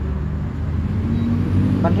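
A steady low motor hum runs throughout, with a man's voice starting just at the end.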